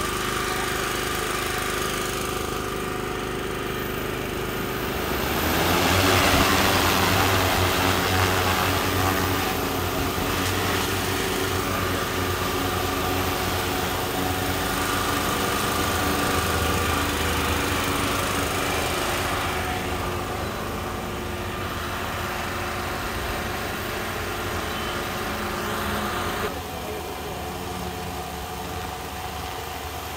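A drone's motors and propellers running steadily, a hum of several held tones that grows louder about six seconds in and drops back somewhat near the end.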